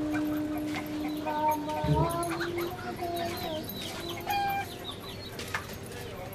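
Chickens clucking in short, bending calls, with a steady held tone under them for the first two seconds.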